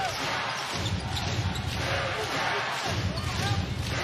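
Arena crowd noise from a basketball game, with a ball being dribbled on the hardwood court and faint voices in the crowd.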